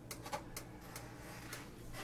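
A few faint, light clicks and taps of kitchenware being handled, among them a metal mesh strainer, mostly in the first second.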